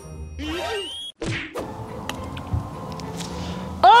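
A putter striking a golf ball once, a single short sharp click about one and a half seconds in, as the putt is struck on the green.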